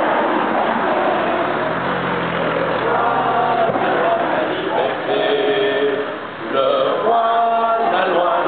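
A group of schoolchildren singing together in unison, holding long notes and stepping from note to note, with a short break a little past six seconds before the singing picks up again.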